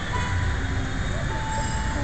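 Steady low rumble of outdoor background noise, with a few faint held tones over it.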